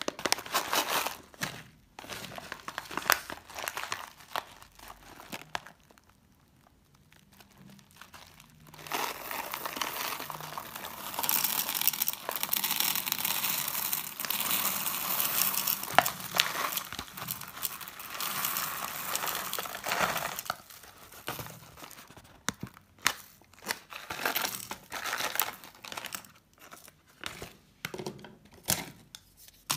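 Plastic bag of hard wax beads crinkling, then the beads poured into a wax warmer's metal pot in a steady rattling stream lasting about twelve seconds, followed by scattered clicks and crinkles.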